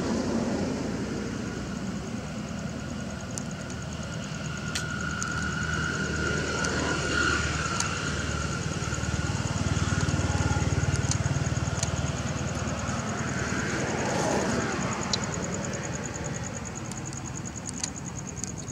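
A low, steady motor-vehicle engine hum that swells toward the middle and then eases off. Over it runs a steady high, pulsing insect buzz, with a few light clicks.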